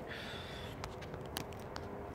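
Low room noise with a few faint, light clicks.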